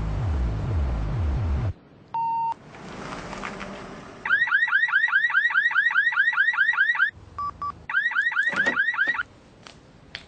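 A loud low rumble with falling pitch, then a single beep about two seconds in. From about four seconds a car alarm siren sounds a rapid rising whoop, about five a second, broken near seven seconds by two short beeps before the whooping resumes.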